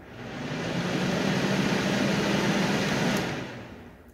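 Small plastic electric fan switched on, spinning up to a steady rush of air with a low motor hum, then dying away near the end.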